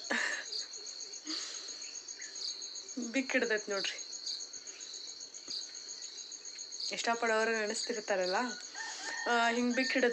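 Crickets chirping steadily in a high, pulsing drone. A few short vocal sounds break in about three seconds in and again from about seven seconds.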